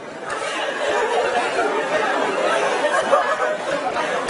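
A crowd of students in a lecture hall talking at once: a steady hubbub of many overlapping voices.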